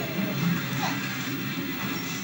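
Television soundtrack playing through the set's speaker: background music with an action sound effect, including a short falling swoop a little under a second in.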